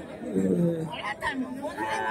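Men talking over the murmur of a crowd.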